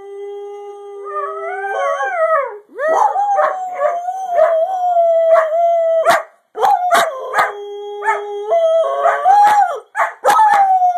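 Dog, given as a greyhound, howling: a long held note that climbs in pitch about two seconds in, then a sustained wavering howl broken by short sharp barks about twice a second from around three seconds in.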